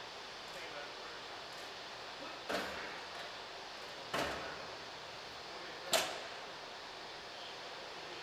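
Heavy steel security doors banging shut: three sudden knocks, a second and a half to two seconds apart, each with a short echo, the last one the sharpest.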